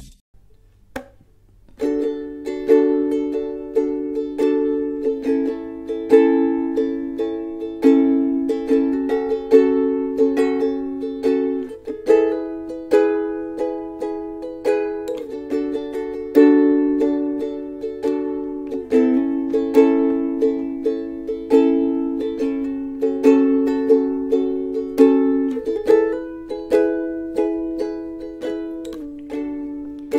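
Ukulele strummed in a steady rhythm, cycling through the chords D, A, F♯m and E, starting about two seconds in.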